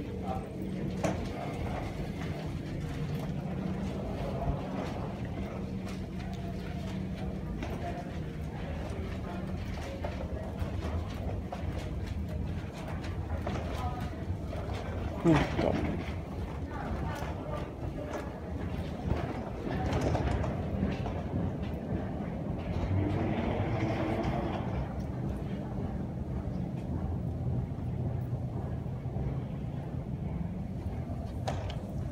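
Steady low hum of terminal building ambience with faint voices, and a short louder sound about fifteen seconds in.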